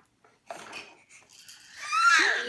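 A baby's high vocal squeal rising in pitch near the end, after a soft breathy rustle about half a second in.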